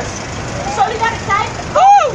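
A woman's voice speaking through a megaphone, thin and tinny, in phrases, with one loud rising-and-falling shouted word near the end.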